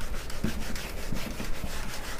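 A handheld eraser rubbed briskly back and forth across a whiteboard, a quick run of scrubbing strokes.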